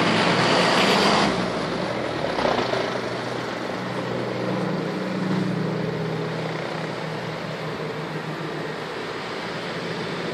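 Steady low drone of a propeller aircraft's engines as it flies low over the sea, under a haze of wind and ambient noise. A louder rush of noise fills the first second or so.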